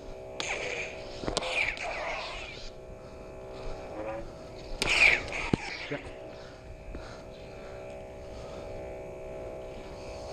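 Combat lightsabers' sound boards playing a steady electronic hum, with swing whooshes and sharp clash effects as the blades strike: one clash about a second in, and a louder one about five seconds in.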